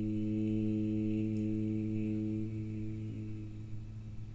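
A group of voices chanting a mantra, holding one long, low, steady note that fades away near the end.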